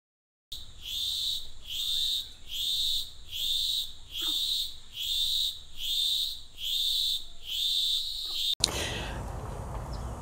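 Outdoor nature sound: a high-pitched chirping call repeats evenly a little more than once a second, with a few faint bird-like chirps underneath. It cuts off abruptly near the end and gives way to a steady outdoor background hiss.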